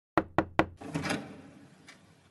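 Three quick knocks, about a fifth of a second apart, as on a door, followed by a short rushing swell that fades away.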